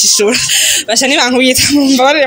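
A woman talking animatedly, her voice wavering quickly up and down on drawn-out syllables.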